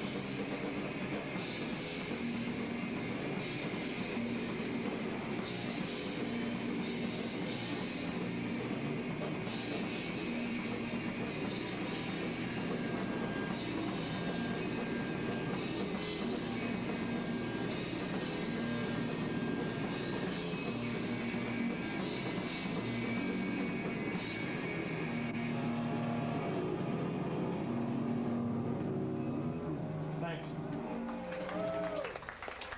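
Live rock band playing electric guitars and a drum kit, with a guitar figure repeating about every two seconds over cymbal wash, recorded through a camcorder's built-in microphone.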